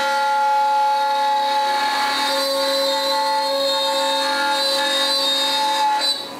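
Carbide 3D CNC router spindle running at speed during a test cut: a loud, steady whine made of several unchanging pitches.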